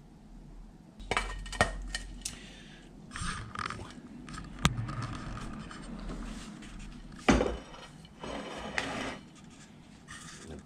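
A stainless steel sprouter bowl being lifted, carried and set down on a plate: scattered metal knocks and clinks, a sharp click about halfway through and one louder knock about seven seconds in.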